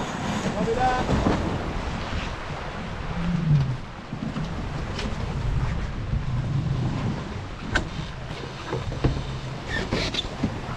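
Steady rush of water along the hull of a small keelboat sailing fast downwind under spinnaker, with wind buffeting the microphone. A few sharp ticks come about five and eight seconds in.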